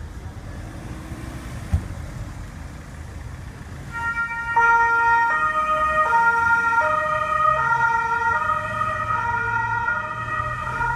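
Two-tone siren of a Carabinieri patrol car that switches on about four seconds in and alternates between its two notes about every three-quarters of a second, over a low rumble.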